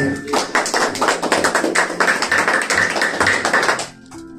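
Fast rhythmic hand clapping and tapping accompanying a worship song while the singing pauses; it cuts off near the end.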